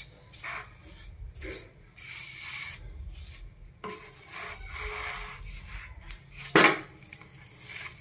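A wooden spatula rubbing and scraping a paratha around a non-stick pan as oil is spread over it. There is a click just before the middle and a sharp knock near the end.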